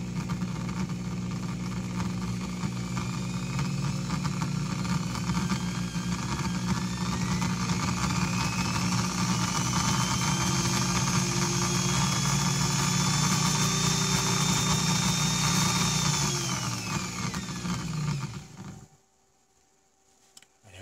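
Makita electric drill running with no load, its motor whine rising slowly in pitch as the speed is increased. About sixteen seconds in the pitch falls away as the drill spins down, and it stops shortly before the end.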